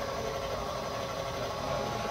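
Spindle motor of a Roland desktop PCB milling machine running, a steady mechanical hum with a couple of held tones.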